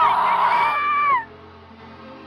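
A high, held vocal wail or scream that slides down and stops just after a second in, over live concert music heard from within the crowd; quieter music follows.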